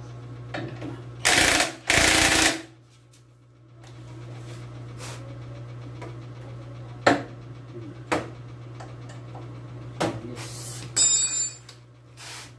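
Cordless impact driver on the top of a motorcycle front fork leg, run in two short, loud bursts one after the other a little over a second in, then a few sharp knocks and a last short burst with a high whine near the end.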